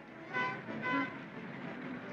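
Two short car-horn toots about half a second apart, followed by a steady wash of street noise.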